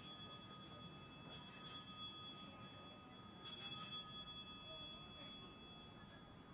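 Altar bells rung at the elevation of the chalice just after the consecration. Two peals about two seconds apart, each a short jingling burst that keeps ringing and dies away, with the tail of an earlier peal fading at the start.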